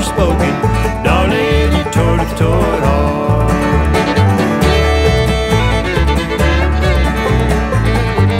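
Bluegrass band playing, with banjo and guitar picking over a steady bass line and some fiddle.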